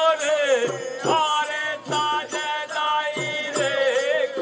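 Bundeli Rai folk song: a high voice sings long, held, wavering lines over a beat of drum strokes.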